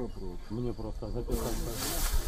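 Men's voices talking in the field audio, then about a second and a half in a loud steady hiss comes in over them.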